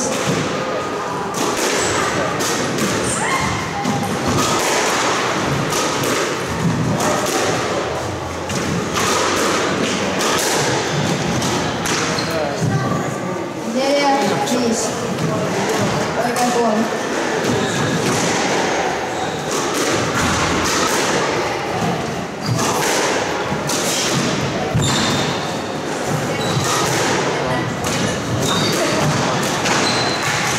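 Squash ball struck by rackets and thudding off the court walls and floor in repeated sharp impacts, with voices in the background.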